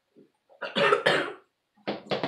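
A person coughing hard after a drink went down the wrong way: a short cough near the start, a loud fit of coughs about half a second in, and more coughing starting near the end.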